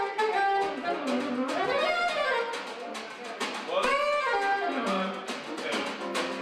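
Jazz band playing, led by a soprano saxophone in winding melodic runs that rise and fall, over steady percussion.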